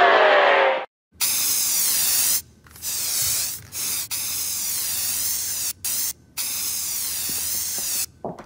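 Aerosol spray-paint can hissing in about six bursts of uneven length with short breaks between, the sound of graffiti being sprayed. A musical sting cuts off abruptly just before the first burst.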